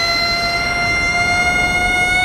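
A single long, steady high-pitched note with a slight upward slide as it begins, held for nearly three seconds and then cut off.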